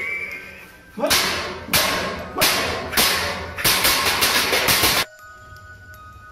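A series of loud, sharp dramatic hit sound effects on the film's soundtrack, about one every 0.7 seconds, quickening into a rapid run of hits near four seconds in and cutting off suddenly about five seconds in.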